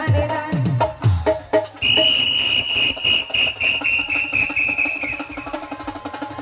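Folk drum strokes with a bending bass pitch. Then, about two seconds in, a steady shrill whistling tone holds for about three seconds and fades out.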